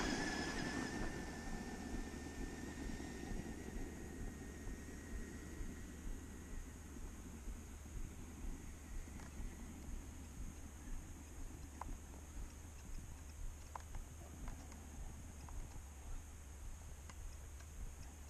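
Traxxas Stampede 2WD RC truck's electric motor whine, a thin high tone that fades away over the first several seconds as the truck drives off into the distance. After that only a steady low rumble and a few faint ticks remain.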